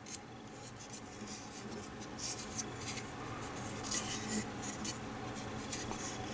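Hands handling and turning a die-cast starship model close to the microphone: fingers rubbing and scuffing on its surface in short, scratchy rustles that come more often after the first couple of seconds, over a faint steady room hum.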